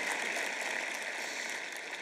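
Audience applauding, the clapping slowly dying away toward the end.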